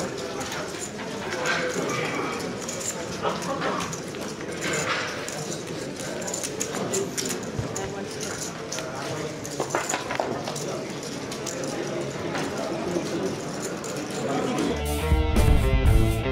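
Indistinct chatter of many voices in a busy card room, with occasional clicks. About a second before the end, loud rock music with electric guitar starts.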